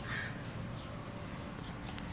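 Caged birds calling faintly, a brief call near the start and a few thin high chirps near the end.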